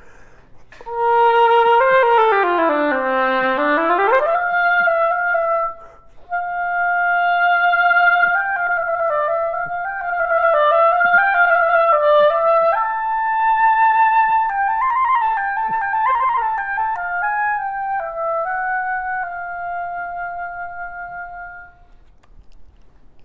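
Solo oboe: a long continuous slide down about an octave and back up, a brief break, then a slow melodic phrase that ends on a held note fading away.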